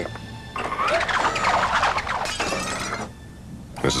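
Cartoon sound effects over background music: a warbling, squealing burst for about two seconds, ending in a crash of something breaking.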